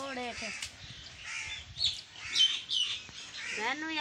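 Birds calling in a few short, sharp bursts, including harsh crow-like caws.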